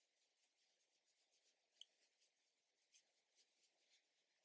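Near silence, with faint soft brushing of a makeup brush swept over the skin of the face in repeated short strokes, two slightly sharper ticks about two and three seconds in.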